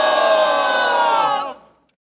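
A group of young people cheering together in one long, loud, held shout with several voices at once. It cuts off suddenly about one and a half seconds in.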